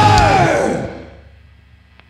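Thrash metal band's final chord on distorted electric guitars, bass and drums, with the last notes falling in pitch, dies away within about the first second. A faint steady hum from the guitar amplifiers is left after it.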